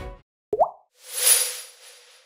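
Background music fading out, then a short rising 'bloop' sound effect and a bright shimmering whoosh with a held tone that dies away: the opening sound effects of a KBS channel ident.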